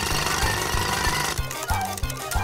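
Cartoon power-drill sound effect: a loud, fast rattling buzz lasting about a second and a half, over background music with a steady beat.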